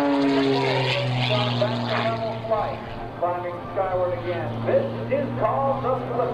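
Oracle Challenger aerobatic biplane's 400-horsepower propeller engine droning steadily, its pitch dropping just after the start and then holding. A man's voice talks over it from about halfway.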